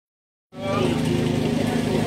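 A steady low engine hum that starts about half a second in, with people's voices over it.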